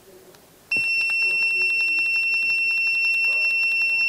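Electronic buzzer in a TPMS tyre-pressure monitor sounding one continuous high-pitched beep. It starts abruptly about three-quarters of a second in and holds steady while the button is held to step up the upper pressure alarm setting.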